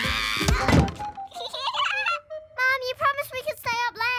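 Cartoon crash ending in a sharp thud about three-quarters of a second in, as a running cartoon puppy collides with a ceramic umbrella vase and knocks it over. It is followed by children's voices over background music.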